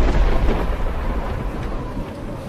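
Storm sound in a film soundtrack: a heavy low rumble of thunder under a rushing noise of wind and rain, loud at first and slowly fading.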